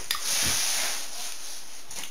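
A man's breath: one soft, hissy exhale lasting about a second that swells and then fades, with a faint click at the start.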